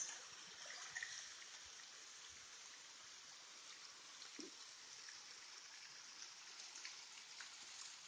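Waterfalls running down basalt rock, heard faintly as a steady, even rush of water.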